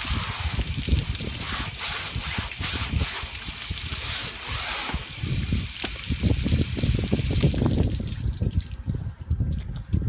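Water spraying from a homemade screen-washing rig onto a window screen's mesh as the screen is passed through it, a steady hiss that thins out about eight and a half seconds in. Irregular low bumps run under it.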